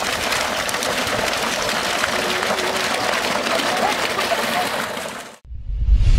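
Water pouring steadily from an irrigation pipe into a ditch, a dense splashing rush with faint voices in it. It cuts off suddenly about five seconds in, followed by a deep low boom.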